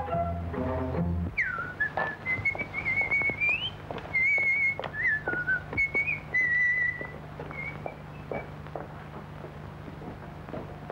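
Bowed-string music breaks off about a second in. Then a person whistles a short wavering tune for about seven seconds, with glides up and down in pitch. Scattered light taps and a low steady hum sit underneath.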